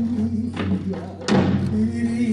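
Korean barrel drums (buk) struck with sticks in the Jindo drum dance, two sharp strokes a little under a second apart, the second louder, each ringing briefly. Under them a held low note of the traditional accompaniment.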